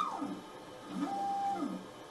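Printer motors whirring in short runs, the pitch rising and falling as they speed up and slow down, with a steady tone held briefly about a second in.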